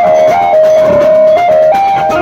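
A live Indian street banjo band plays loud music: a lead melody holds notes that step up and down, over a beat of drums.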